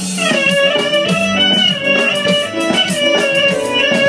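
Live amplified band playing a lively Greek-style dance tune: a fast lead melody with quick falling runs over a steady bass beat.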